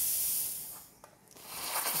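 Steam hissing from the wand of a stovetop Bellman CX-25P espresso and steam maker. It dies away about a second in and builds again near the end.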